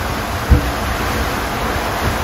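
Steady rushing noise of wind and water from a sailing yacht under way at about 7 knots, with one brief low thump about half a second in.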